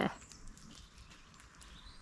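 The last syllable of a spoken word, then faint outdoor ambience with a few light clicks.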